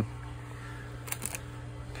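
Faint handling noise: a few light clicks and rustles of small parts and cardboard in a kit box, a little past the middle, over a steady low hum.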